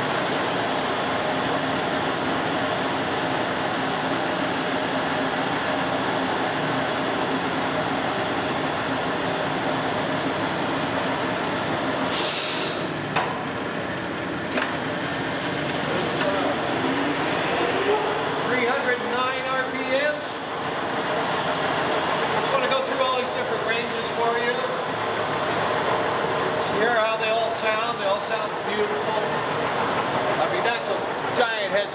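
Leblond model NI heavy-duty engine lathe running with its spindle and chuck turning at about 182 RPM: a steady drive and gearing noise, quiet for a machine of its size. A brief hiss about twelve seconds in and a single click shortly after.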